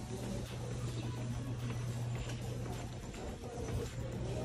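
Footsteps going down hard terrazzo stairs, a series of light steps over a steady low hum.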